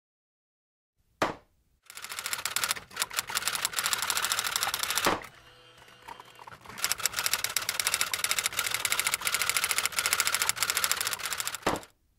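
Rapid typewriter-key clatter in two long runs, from about two seconds to five and again from about seven seconds to near the end, with a single sharp knock about a second in and another between the runs.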